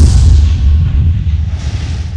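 Title-sequence sound effect: a loud deep rumble with a rushing whoosh, slowly fading, and a softer whoosh swelling near the end.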